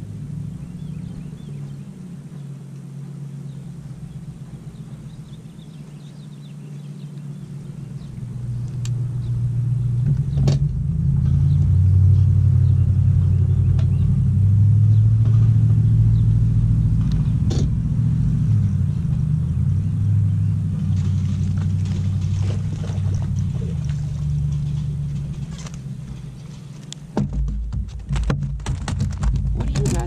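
A bass boat's trolling motor hums low and steady. It swells to its loudest through the middle and then cuts off abruptly near the end, where a rapid run of clicks and rattles takes over.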